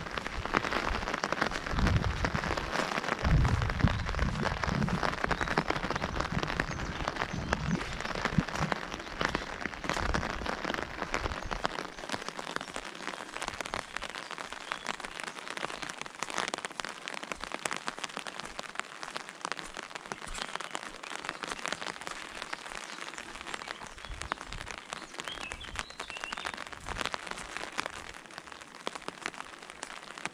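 Steady rain falling on a fabric umbrella held close overhead: a dense hiss of many small drop hits. Low thumps sound during the first twelve seconds, after which the rain is a little softer.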